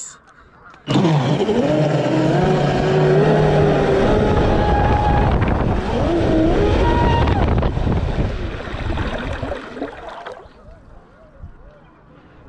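Traxxas M41 RC speedboat's electric motor whining as the boat pulls away and runs at speed over the water, its pitch climbing and falling with the throttle over the rush of water off the hull. It starts suddenly about a second in and dies away about ten seconds in as the boat coasts.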